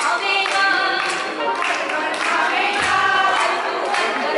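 Women singing a devotional song together, one voice carried on a handheld microphone, with steady rhythmic hand-clapping about twice a second.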